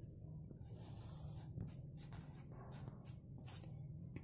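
A pen writing on lined notebook paper: a faint series of short strokes as a bracketed algebra expression is written out by hand.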